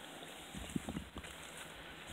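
Quiet outdoor background with a few soft, low thumps about half a second to a second in, from walking with a handheld camera.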